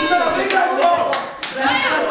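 A few separate sharp hand claps among excited voices.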